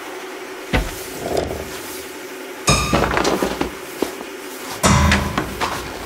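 Contemporary chamber music for pianos and percussion played live: scattered sharp struck attacks, a soft one under a second in and louder ringing, pitched ones near three seconds and about five seconds in, over a steady hazy background.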